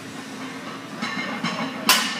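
A loaded deadlift barbell, plates of iron around a 545 lb total, comes down on the gym floor near the end with one sharp, loud clank of the plates. It is the bar being returned to the floor on what the call of "No, not today" marks as a missed heavy pull.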